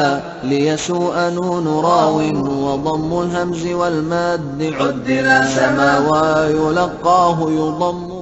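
Chant-like male singing, a vocal jingle with a slow melody and long held notes.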